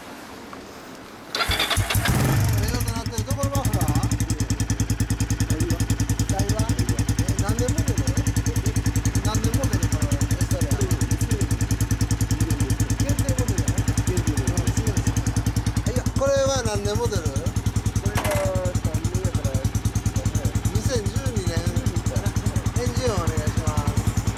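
Kawasaki Estrella's single-cylinder engine starting about a second in, then idling with a steady, even beat.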